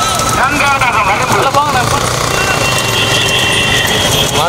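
A shouting voice over the steady running of motorbike engines, with a steady high-pitched tone through the second half.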